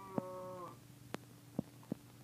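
German shepherd puppy eating raw chicken chunks from a stainless steel bowl: a drawn-out low moan-like sound ends within the first second, then four sharp clicks of teeth or muzzle against the bowl.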